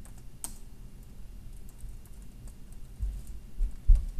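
Typing on a computer keyboard: scattered keystrokes, sparse at first, with a burst of louder, low knocks in the last second.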